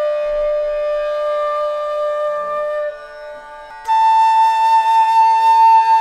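Flute music: one long held note, a brief quieter dip about three seconds in, then a louder, higher note held, over a steady lower drone.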